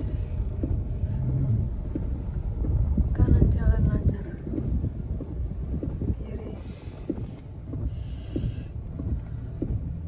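Low rumble of a car's engine and road noise heard inside the cabin while creeping in slow traffic, with a brief muffled voice about three seconds in.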